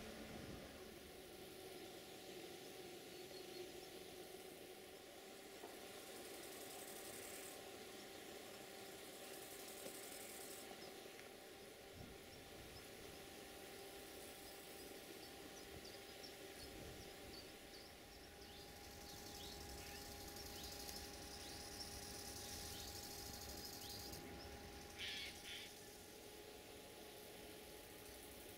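Faint outdoor ambience: a steady low hum with scattered faint bird chirps, which grow more frequent in the second half, and a brief louder chirp near the end.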